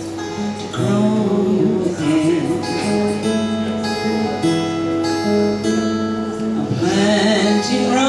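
Acoustic guitar playing a short instrumental passage between sung lines of a folk song, a woman's singing voice coming back in near the end.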